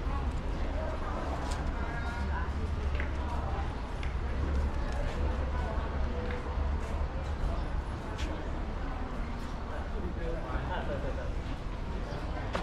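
Voices of people talking in the background, not close enough to make out, over a steady low rumble, with a few faint clicks.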